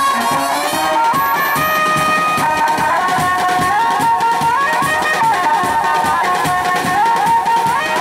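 Indian street brass band playing: brass horns carry a melody that steps up and down in held notes, over snare and bass drums beating a steady rhythm.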